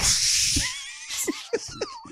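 Laughter: a breathy gust of laughing, then high, wavering laughs that fade away.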